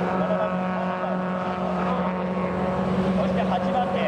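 Mazda Roadster race cars' four-cylinder engines held at high revs, a steady drone as the cars run down the circuit straight.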